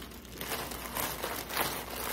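A clear plastic packaging bag crinkling as it is handled, in irregular rustles that start about half a second in.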